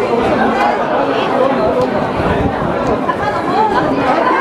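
Many people talking at once: a steady hubbub of overlapping voices with no single voice standing out.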